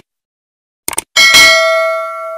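Subscribe-animation sound effect: a few quick clicks about a second in, then a struck bell-like ding with several ringing tones that slowly fades.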